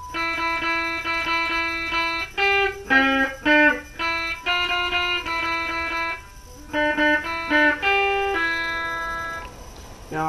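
Electric guitar, a Dean Vendetta 1.0, played through a Crate GX-15 practice amp on its clean channel. Single notes are picked in a melody, a few held and ringing, and the playing stops shortly before the end.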